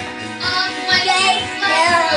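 Pop music playing, with a young child's high voice singing along in wavering, drawn-out notes.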